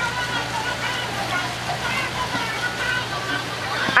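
Steady rush of running water from a mini-golf course's waterfall or pond feature, with faint voices underneath.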